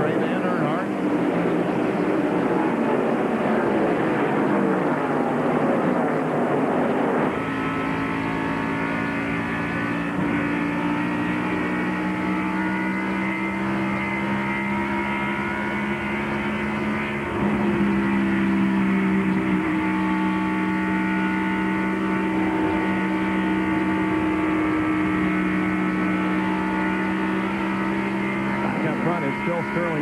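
Stock-car V8 engines at racing speed. For the first seven seconds, cars rush past trackside with falling pitch. Then the sound switches to the steady, high-revving note of a single car heard from an onboard camera, its pitch climbing gently and stepping up about halfway through.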